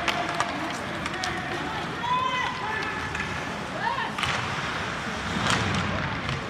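Ice hockey rink during play: voices of spectators and players shouting over a steady hubbub, with a few sharp clacks of hockey sticks on the puck.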